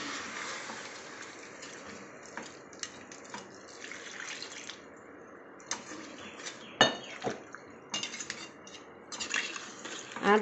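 Liquid poured into a hot aluminium pot of chicken masala, its hiss fading over the first second or two, then a metal ladle stirring and clinking against the pot, with a few sharper knocks in the second half.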